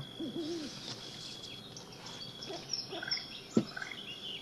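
Faint bird calls: a couple of low, hooting coos in the first second, then scattered high chirps, with a single sharp click about three and a half seconds in.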